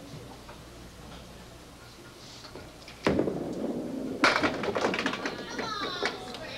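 Candlepin bowling ball crashing into the pins about three seconds in, then a louder crack about a second later as pins scatter and clatter on for a couple of seconds.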